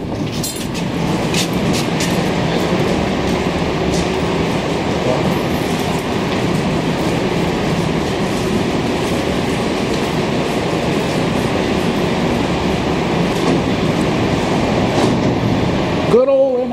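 Montreal Metro MR-63 rubber-tyred subway train, a steady loud rumble and hiss of the train in the station, with a few sharp clicks in the first couple of seconds.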